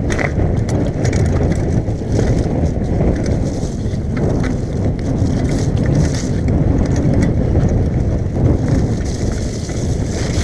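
Mountain bike descending a muddy forest trail at speed: a steady low rumble of wind on the microphone and tyres on wet dirt, with frequent sharp clicks and rattles from the bike.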